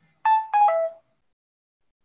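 A short electronic notification chime: three quick tones, each lower than the one before, starting about a quarter second in and over within about a second.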